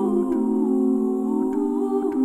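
A cappella women's voices humming a wordless chord in several parts, the notes held and shifting smoothly from one chord to the next.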